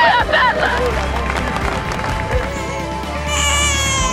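Background music with a steady low drone. A woman's wailing cry trails off in the first half second, and a newborn baby starts crying about three seconds in, high-pitched and wavering.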